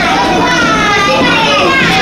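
Several children talking and playing at once, their voices overlapping without a break.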